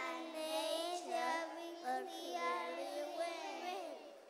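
Young children singing, with long held notes that glide in pitch.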